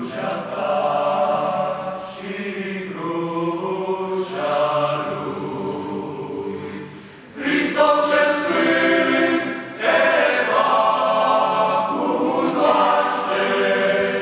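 Young men's choir singing a hymn a cappella, in long held phrases. A brief dip just past the halfway point, then the voices come back in louder.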